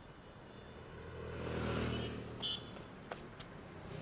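A motor vehicle driving past, its engine and tyre noise rising to a peak about two seconds in and fading away, with a brief high chirp and a couple of light clicks after it.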